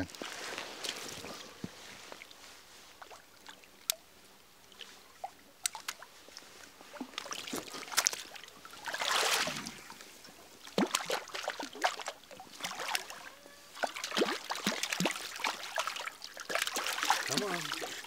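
Hooked brown trout splashing at the surface of a shallow stream as it is reeled in, over trickling water, with scattered sharp clicks. There is a louder splash about nine seconds in and busier splashing near the end.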